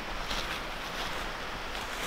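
Steady outdoor wind noise on the microphone, with faint rustling.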